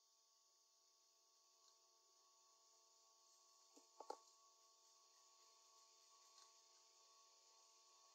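Near silence: faint steady hum of a few pure tones with light hiss, and a couple of faint clicks about four seconds in.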